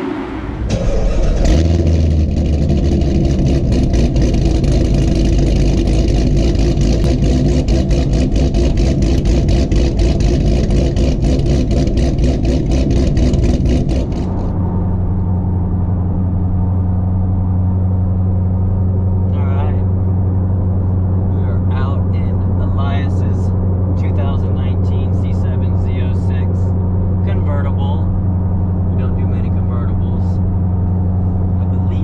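Supercharged LT4 V8 of a 2019 Corvette Z06, heard from inside the cabin: a loud, rough engine and exhaust sound for the first dozen seconds or so, then, after a sudden drop about halfway in, a steady low engine drone while cruising.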